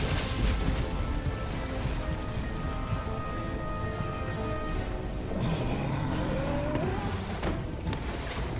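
Dramatic cartoon background music over a steady rumble, with a rising tone in the second half.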